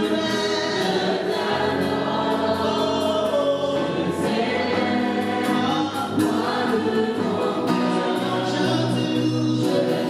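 Live gospel worship music: a male singer on a microphone with a group of voices singing along, backed by electric guitar and conga drums.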